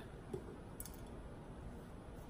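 Faint handling sounds of drink bottles being picked up and moved, with two light clicks, one about a third of a second in and one near the end of the first second.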